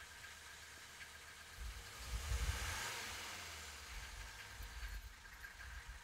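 1984 Mercedes-Benz 300D's five-cylinder turbodiesel idling, heard from inside the cabin, a steady low rumble. About two seconds in it swells briefly with a rising hiss, then settles back to idle.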